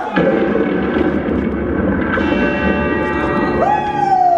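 Live stage-show sound: a dense wash of sound, joined about halfway by a sustained, bell-like chiming chord. Near the end a voice swoops up and then slides slowly down in pitch.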